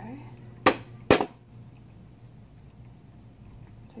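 Two sharp metal-on-metal hammer strikes, about half a second apart, from a ball-peen hammer tapping a twisted tool-steel bar on the bench vise to straighten a slight wave out of it.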